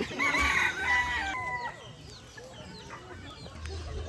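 A rooster crowing, a loud drawn-out call that stops abruptly about a second and a half in. Fainter short chirps of small birds follow.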